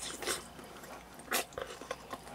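Quiet eating noises: a few short mouth smacks and clicks, the sharpest about halfway through.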